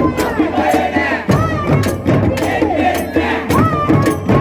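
Protest crowd shouting and chanting slogans, led by voices on microphones, over a steady beat of hand drums, a bass drum and small hand cymbals.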